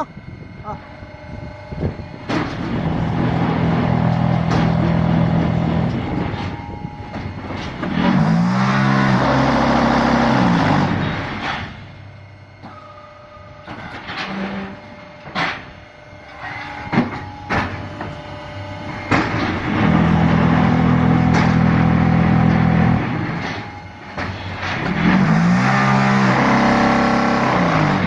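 Hydraulic concrete block making machine running through its automatic cycle: long spells of loud, steady mechanical hum, a stretch where the hum's pitch rises and falls back, then quieter spells of sharp metallic knocks. The cycle repeats about every 17 seconds.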